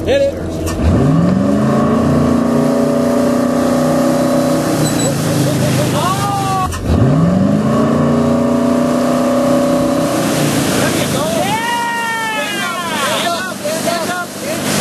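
Towboat engine revving up to pull a rider out of the water, its pitch climbing and then holding steady at towing speed. It does this twice, about a second in and again about seven seconds in, over the rush of water.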